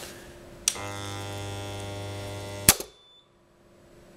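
AP50 circuit breaker under a 300 A test current, six times its rating: a click as the current is switched on, a steady mains hum for about two seconds, then a loud snap as the breaker trips and the hum stops. It trips about 1.2 seconds after the current comes on, faster than the 1.5 to 10 seconds its time-current curve allows, which the tester takes as a sign of a counterfeit breaker.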